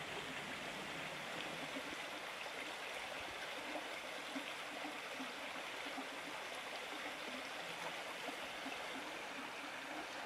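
River water running steadily over stones.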